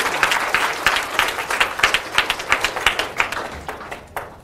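Audience applauding: many hands clapping at once, fading out near the end.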